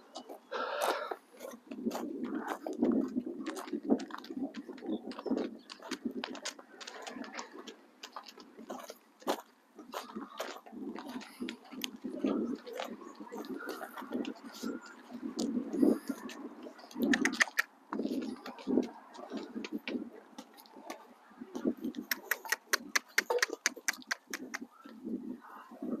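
Horse's hooves and a person's footsteps crunching on loose stone gravel as the horse is led at a walk: irregular crunches and clicks, with a quicker run of clicks near the end.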